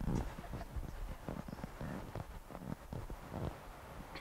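Faint, irregular clicks and knocks over a low rumble, like equipment being handled.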